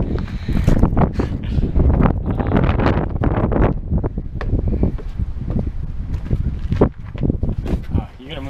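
Wind buffeting an action camera's microphone in a constant low rumble, with scattered footsteps and knocks on gravel and a wooden deck.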